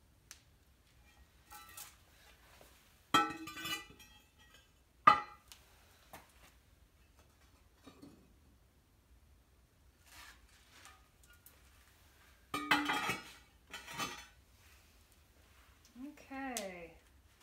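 Ceramic kiln shelves and clay cookies clinking and knocking against each other as they are lifted out of an electric kiln. There are a few sharp ringing clinks, about three and five seconds in and again twice near the end, with lighter clicks between.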